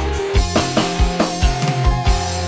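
Live band music without vocals: a drum beat over sustained keyboard and bass notes, from a dangdut band on stage.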